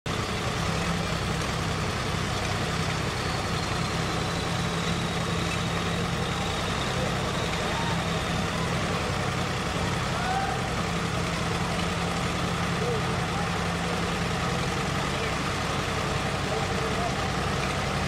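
Diesel tractor engines, a Swaraj 855 FE among them, idling steadily side by side while the hitched tractors stand still, with indistinct crowd voices behind.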